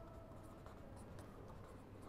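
Faint scratching of a felt-tip marker writing letters on paper in short strokes, over a low steady hum.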